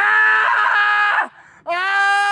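A person's long, high-pitched scream, held steady for about a second and dropping off at the end; a second held scream starts near the end.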